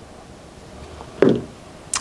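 Quiet room tone, broken a little past the middle by one brief sound of a man's voice, a single short syllable.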